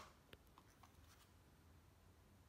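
Near silence: room tone with a faint click about a third of a second in, from a small cardboard eyelash box being handled.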